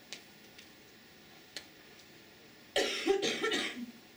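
A person coughing, a short run of rough coughs lasting about a second, near the end.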